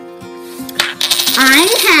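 A coin dropping and rattling on a hard surface about a second in, after a sharp click, over steady background guitar music. Near the end a girl's voice glides up and then down.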